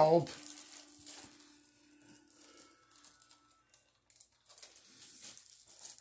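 Faint, irregular rustling and crinkling of plastic packaging being handled, quieter in the middle and picking up again near the end.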